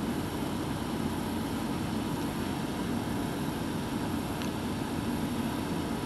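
Steady room noise: an even low hum with hiss and no distinct events.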